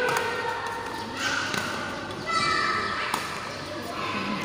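Badminton rackets striking a shuttlecock during a rally: a few sharp, separate hits, among the voices of players and onlookers calling out.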